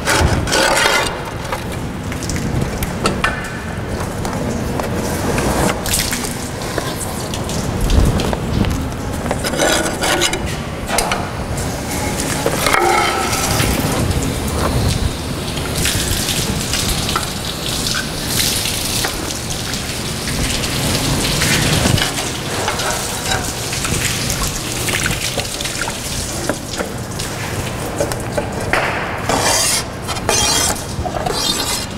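Water from a hose spraying and splashing over freshly cut quartz strips on a stone saw's table, rinsing off the cutting slurry, with occasional knocks and clatter as the pieces are handled.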